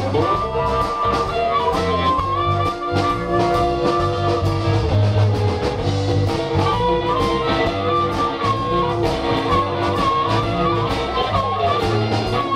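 Live electric blues band playing an instrumental break: drums and bass guitar keeping a steady groove under electric guitar, with a lead line of long held notes that bend in pitch.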